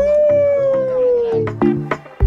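A man's long drawn-out exclamation, one held voice that slowly falls in pitch for about a second and a half. Under it, electronic background music with a steady beat comes in.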